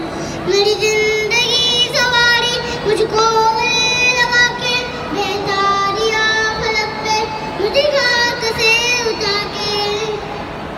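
A young boy singing solo into a handheld microphone through a PA, a slow melody of long held notes with pitch slides between them.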